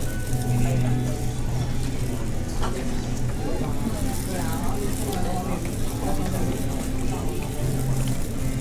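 Indoor food-court ambience: a steady low hum with distant chatter and background music.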